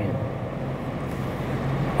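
Steady low rumble of outdoor background noise, with no distinct sound standing out.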